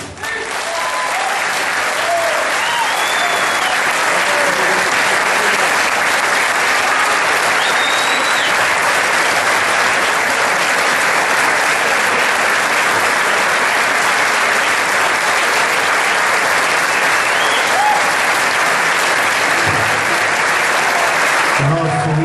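Large audience applauding, with the band members joining in: dense, steady clapping that goes on unbroken without fading.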